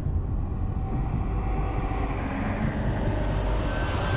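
Deep, steady rumble of a cinematic title sound effect. It begins with a sudden hit just before and carries on under the animated title, with theme music tones coming in right at the end.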